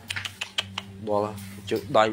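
A man speaking in short phrases, with a quick run of sharp clicks in the first half second.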